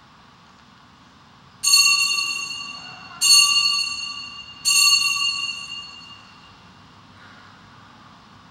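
An altar bell struck three times at the priest's communion, each clear ringing stroke fading away before the next, about a second and a half apart.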